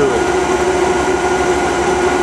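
Homemade nine-coil generator running steadily: a constant hum with a steady whining tone over a rushing noise.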